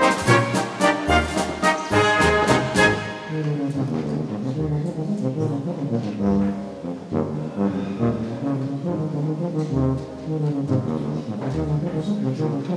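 Brass music with slow, sustained chords; a run of sharp percussive hits stops about three seconds in, and the brass carries on alone.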